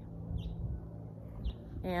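Two faint, short, falling bird chirps over a low steady rumble on the microphone, with a woman's voice starting again near the end.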